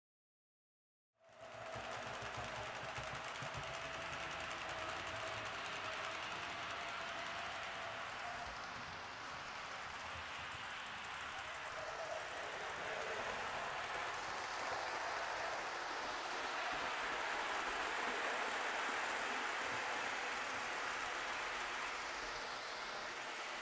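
Proto 2000 GP20 model diesel locomotive running steadily on a model railroad with a train of freight cars: an even whir of the motor and wheels rolling on the rails, starting about a second in. It is running pretty smooth after being repaired.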